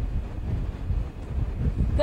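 Strong storm wind buffeting a field reporter's handheld microphone: an uneven, gusting low rumble.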